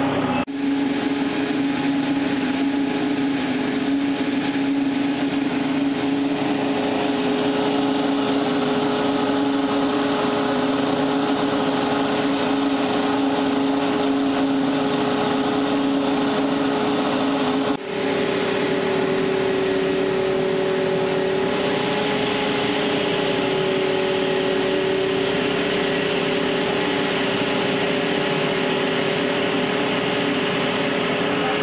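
An engine running steadily at constant speed: an even drone with a steady hum. The hum drops out briefly about 18 seconds in and comes back at a slightly different pitch.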